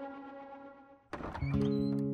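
Dramatic TV-serial background score: a held chord fades out, then a sudden thud-like hit about a second in starts a new, lower sustained chord.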